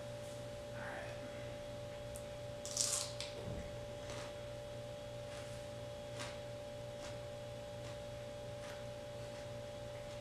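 Faint crunching of a raw snow pea being chewed: one crisp crunch about three seconds in, then a few soft, scattered crunches. A steady low electrical hum runs underneath.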